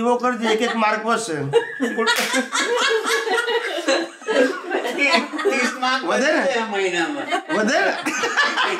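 A man talking, then breaking into laughter about two seconds in and laughing through his words.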